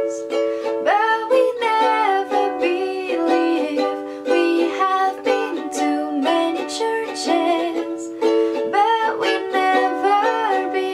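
Ukulele strummed in a steady rhythm, with a woman singing over it.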